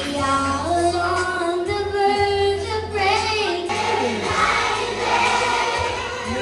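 A group of young children singing a song together in unison.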